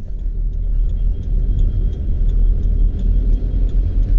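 Car cabin noise while driving: a steady low rumble of the engine and tyres on the road, heard from inside the car.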